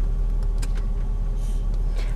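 Steady low rumble of a Nissan truck's engine and road noise, heard from inside the cab as it drives, with a few faint clicks.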